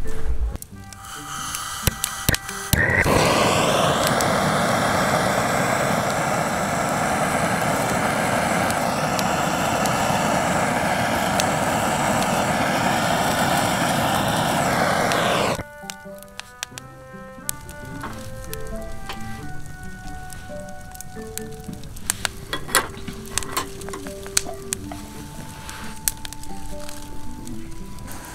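Hand-held gas torch burning with a steady, loud hiss as it sears meat on a wire grill. It starts about three seconds in and cuts off suddenly about halfway through. After it stops, soft background music plays single held notes, with a few light clicks.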